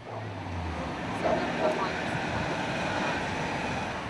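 A steady engine roar that swells over the first second and then holds.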